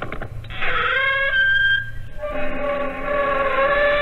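Creaking door sound effect: a long, drawn-out hinge creak that ends after about two seconds, followed by the theme music starting with held notes.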